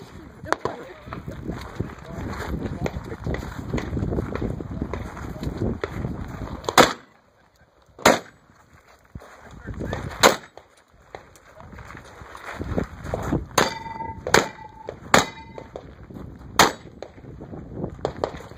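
Shotgun fired as single, unevenly spaced shots, about seven sharp cracks over ten seconds. A brief steady tone sounds among the shots in the second half.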